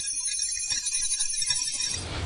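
Background music: high sustained tones over a light, evenly pulsing beat.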